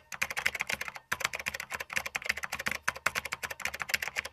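Computer keyboard typing sound effect: a fast, continuous run of key clicks, with a brief pause about a second in.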